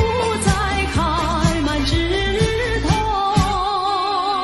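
Old Taiwanese pop song: a woman singing held notes with a wide vibrato over a band accompaniment with a steady drum beat.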